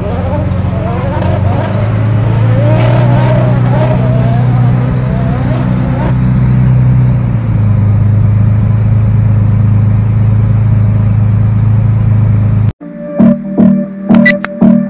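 A classic car's engine idling with a steady low hum, its pitch settling slightly lower about halfway through. Near the end it cuts off abruptly and music with plucked guitar begins.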